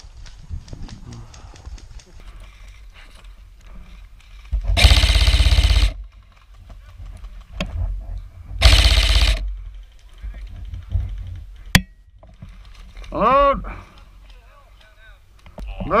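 Airsoft M4 AEG (Elite Force/VFC Avalon VR16 Saber Carbine) firing two full-auto bursts of about a second each, a few seconds apart, close to the microphone. A sharp click follows, then a short shout.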